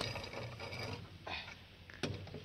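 A cross-shaped lug wrench spun by hand on a car's wheel nut, metal socket and nut rattling and scraping on the stud as they turn. The sound is louder at the start and again a little past halfway.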